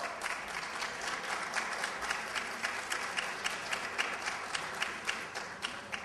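Audience applauding, many hands clapping together at a steady level; it dies away at the end as speech resumes.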